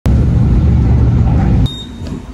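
Subway train running: a loud, steady low rumble that cuts off abruptly about one and a half seconds in. A short high beep follows from a fare gate card reader as a transit card is tapped on it.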